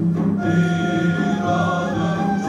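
Sufi sema ceremony music: a male chorus singing long held notes with instrumental accompaniment, a new phrase starting about half a second in.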